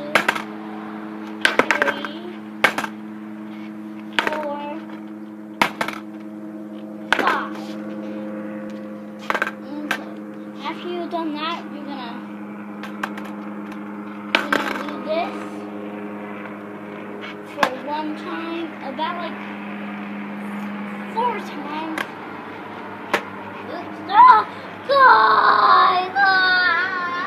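Skateboard clacking down on a concrete driveway as it is tipped up on its tail and slapped back down, a sharp knock every second or two, over a steady low hum.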